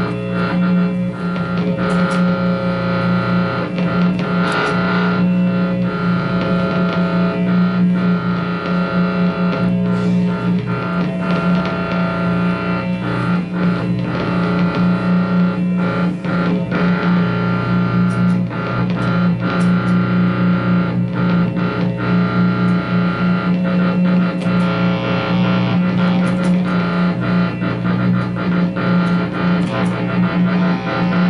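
Experimental noise music from electric guitars and electronics run through effects pedals and amplifiers: a loud, steady, layered drone with a strong low hum and a bright tone above it, crossed by crackles and clicks throughout.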